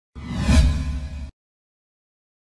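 Logo intro sting: a whoosh sound effect over a short burst of music with low sustained notes, swelling to a peak about half a second in and cutting off sharply just after a second.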